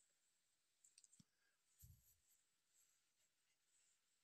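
Near silence, broken by a few faint clicks about a second in and a soft low thump about two seconds in.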